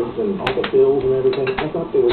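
A person's voice holding a drawn-out, fairly level note rather than speaking words, with a couple of sharp knocks about half a second in.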